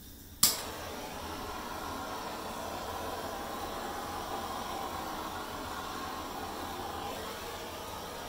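Hairdryer switched on with a click about half a second in, then blowing steadily across wet acrylic pour paint to spread it and open up cells.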